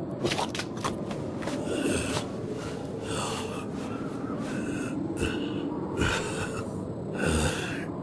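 A wounded man's heavy, ragged breathing: repeated gasps about once a second, from a swordsman who has just been cut across the face.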